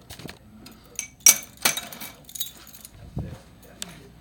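Keys jangling with a series of sharp metallic clinks and clanks, the loudest a little over a second in, and a short low thud a little after three seconds.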